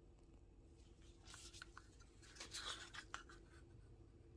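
Faint scraping and a few light clicks as a wooden craft stick stirs thick gel stain paint in a cup. The scraping is loudest about two and a half seconds in.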